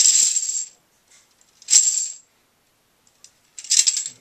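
Plastic Connect Four discs clattering as they spill out of the grid into the base tray, in three short bursts: one at the start, one about halfway through and one near the end.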